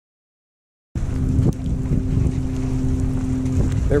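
Silent for about the first second, then wind buffeting the microphone over a steady low engine drone on the water.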